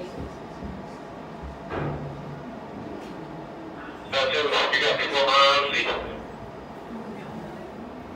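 A person's voice, loud and wavering in pitch, for about two seconds halfway through, over the low steady noise of a building lobby.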